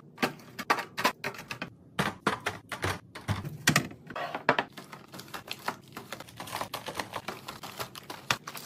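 Aluminium soda cans and clear plastic organizer bins being handled and set down: a quick, irregular run of clicks and clacks, several a second.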